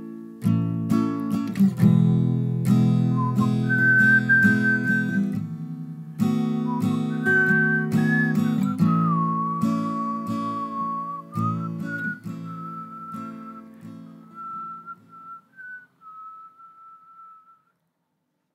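Instrumental song outro: strummed acoustic guitar chords with a whistled melody over them. It fades out over the last few seconds and stops just before the end.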